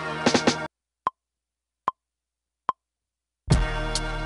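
A boom-bap hip-hop beat playing from a Maschine groovebox cuts off suddenly less than a second in. Three short, evenly spaced metronome clicks follow in silence, about 0.8 s apart like a count-in, and the beat starts again about three and a half seconds in.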